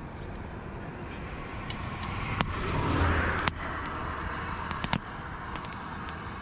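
A road vehicle passing, its rush of tyre and engine noise swelling and fading around the middle over a steady traffic background. Scattered sharp pops from the wood fire crackling.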